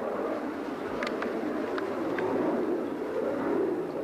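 A bombing aircraft passing over, heard as a steady, wavering engine drone on a field cassette recording. A few short faint clicks or chirps occur in the first half.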